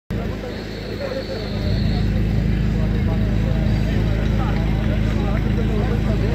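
An engine running steadily at a constant speed, a little louder from about two seconds in, with people talking.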